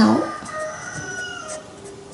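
A faint, thin high tone in the background, held for about a second and sliding slightly down in pitch, just after a voice stops.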